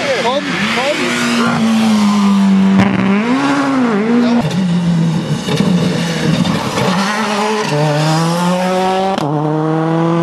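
Rally car engines running hard on a tarmac stage, the pitch rising and dropping with throttle and gear changes. Near the end the note climbs steadily through two gears.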